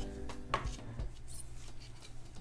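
Wooden canvas stretcher frame being turned on a tabletop: two light knocks, about half a second and a second in, with the frame rubbing on the table.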